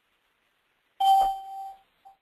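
A single electronic chime: one sudden ding about a second in, ringing on one clear tone and fading out within a second.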